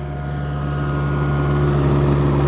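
Kubota U55 mini excavator's diesel engine running steadily with an even hum, growing slowly louder.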